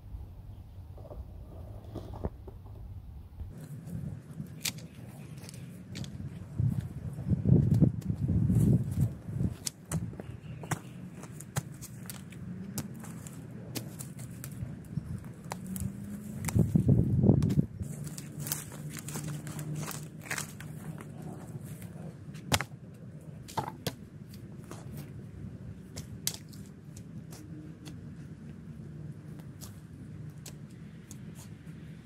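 Dry grass, brush and twigs crunching and crackling underfoot and in the hands as woody debris is gathered and laid into a hugel bed, with many small snaps and rustles. Two louder low rumbling stretches come about a third of the way in and again past the middle.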